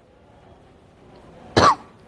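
A single short cough about one and a half seconds in, after a moment of faint room tone.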